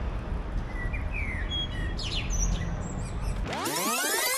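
Small birds chirping a few short times over steady outdoor ambience with a low rumble. Near the end a loud whoosh starts and rises in pitch.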